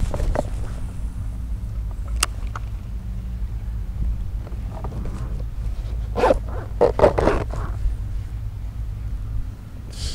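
Shirt fabric brushing and rubbing against the camera microphone as the arm moves close past it, with a few sharp clicks and a louder stretch of rustling about six seconds in. A steady low hum runs underneath throughout.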